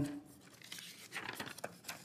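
Sheets of paper rustling and being shuffled close to a desk microphone, faint and irregular crackles beginning about half a second in.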